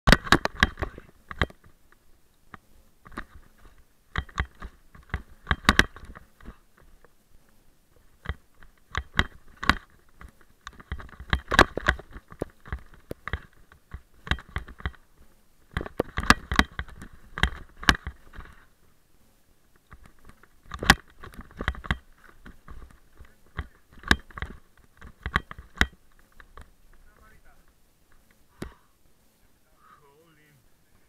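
A mountain bike clattering down a rough, rocky trail: bursts of sharp knocks and rattles as the wheels and frame are jolted over rocks. It thins out and goes quiet in the last few seconds as the bike slows to a stop.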